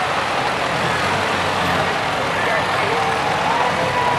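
Old farm tractor engines running steadily as the tractors drive slowly past, with voices of people nearby talking over them.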